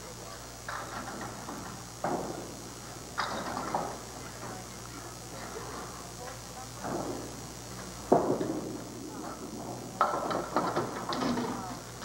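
Candlepin bowling alley background: faint voices in the hall and occasional knocks. The sharpest knock comes about eight seconds in.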